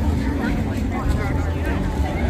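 Chatter of a crowd, several nearby voices talking at once, over a steady low rumble.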